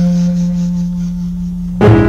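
Closing bars of a New Orleans-style jazz recording: a single low note is held and slowly fades after a falling phrase. Just before the end a loud new chord strikes in.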